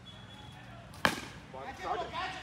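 A single sharp knock about a second in: a wooden cricket bat striking the ball.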